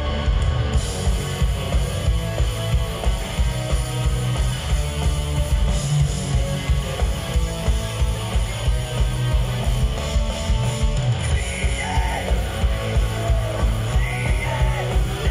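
Live rock band playing loud: electric guitars over a steady, driving drum beat.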